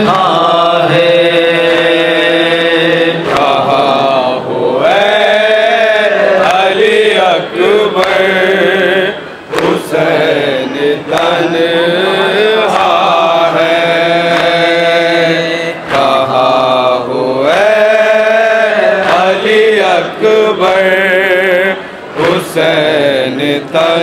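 A male noha reciter chanting a Shia mourning lament into a microphone over a PA, in long melodic lines held between short breaths.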